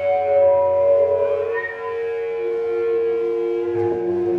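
A live band's amplified instruments holding long, droning notes with no drums, the pitch shifting about halfway through and again near the end.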